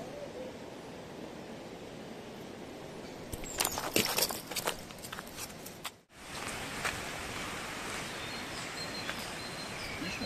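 Quiet lakeside outdoor ambience with a cluster of clicks and rustles from about three and a half to six seconds in. It drops out abruptly for an instant, then the steady outdoor ambience returns with a few faint, short high chirps.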